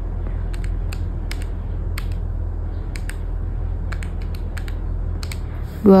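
Keys of a desktop calculator being pressed, a string of about fifteen short, irregular clicks over a steady low hum.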